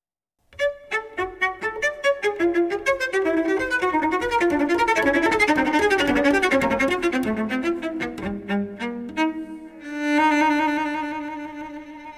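Cello played spiccato, the bow bouncing off the string to give a fast run of short, detached notes, ending on one long held note that fades away.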